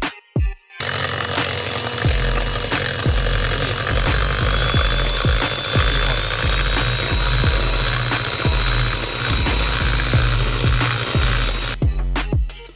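Electric hand mixer running at high speed, beating eggs and sugar, with a steady motor whine that steps up in pitch about four seconds in. Background music with a steady beat plays over it.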